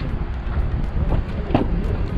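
Wind buffeting the camera's microphone: a rough, low rumble, with a brief sharper sound about one and a half seconds in.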